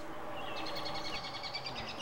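A songbird giving a quick series of high chirps over a faint, steady outdoor background.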